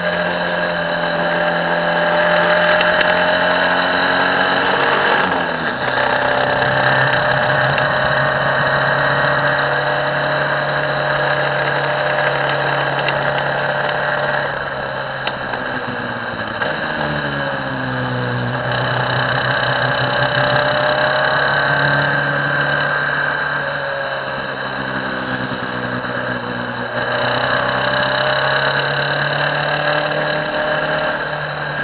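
Formula 1600 single-seater race car's engine running hard at high revs, recorded onboard, with a steady rush of wind and road noise. The pitch steps down sharply a few times as the driver changes gear, about five seconds in and again around eighteen seconds.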